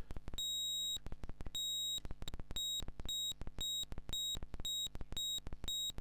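High-pitched square-wave tone from a Eurorack modular synth oscillator, switched up and down by a square-wave LFO reset to a clock subdivision. It gives a rhythmic beeping about twice a second, with a click at each change.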